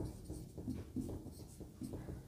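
Marker pen rubbing across a whiteboard in short, irregular strokes as a word is written.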